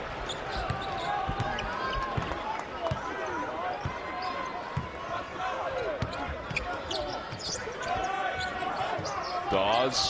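Basketball being dribbled on a hardwood court, irregular dull thumps every second or so, over the steady murmur of a large arena crowd.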